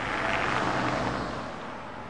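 A vehicle passing by: road noise that swells to its loudest about half a second in and then slowly fades.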